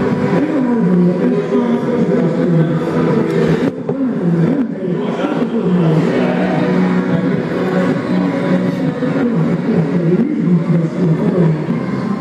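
Background music with a singing voice, steady throughout.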